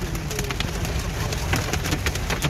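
Heavy rain drumming on a car's windshield and roof in a storm, a dense run of rapid, sharp ticks over the low rumble of the car driving.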